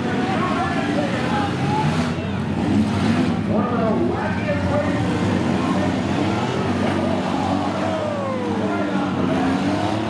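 Engines of several demolition-derby minivans running and revving up and down together, with the pitch rising and falling as the drivers throttle on and off. One engine drops in a long falling note near the end.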